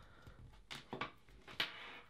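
Faint handling of a charging cable and wall charger, with a few small plastic clicks around the middle and near the end as a USB plug is pushed into the charger.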